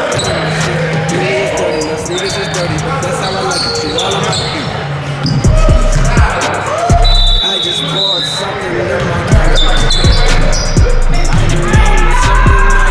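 Live basketball game audio in a large gym: the ball bouncing on a hardwood floor, sneakers squeaking, and players' voices echoing in the hall. Music with a heavy bass comes in about halfway through and gets louder.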